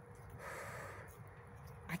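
A woman's short, audible breath near the microphone, a nervous exhale or sigh about half a second in, over a faint low rumble.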